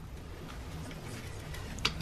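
Faint ticking and handling sounds of a camshaft actuator solenoid being twisted by hand to lock it into the timing cover, over a low steady hum.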